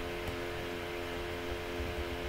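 Steady electrical hum made of several even tones, with a faint hiss underneath.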